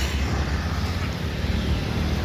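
Steady low vehicle rumble with road noise, heard from a camera moving through street traffic.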